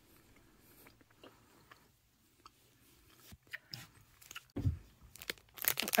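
Close-up chewing of a gummy fruit snack, faint at first, with a few mouth clicks and a low thump about four and a half seconds in. Near the end comes a quick run of crackling, like a plastic snack pouch being handled.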